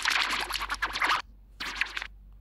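Heavily distorted, harsh crackly audio from an embedded 'gristle distortion' video edit playing on a phone. It breaks off a little over a second in and comes back for a shorter stretch near the end.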